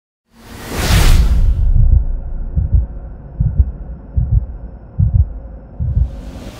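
Intro sound effect: a loud whoosh about a second in, then a slow, even run of deep heartbeat-like thuds, a little more than one a second, over a low hum.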